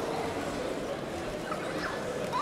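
Hall ambience: a steady murmur of many distant voices, with a few short, higher voice fragments near the end.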